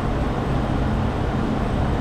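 Steady low rumble of street traffic noise.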